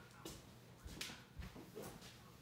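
Faint footsteps on a tile floor: a few soft, separate steps.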